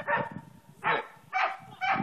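A dog barking about four times, roughly half a second apart.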